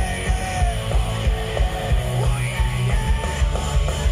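Live rock band playing loud: electric guitars over a driving drum beat, with gliding pitched lines such as guitar bends on top.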